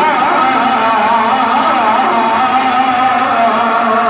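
A man's voice chanting devotional verse in long, wavering, held melodic lines, amplified through a microphone and loudspeakers.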